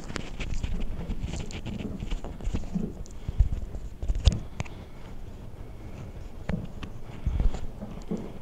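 Handling noise at a lectern: irregular knocks, clicks and low thumps, the loudest two about three and a half and four seconds in.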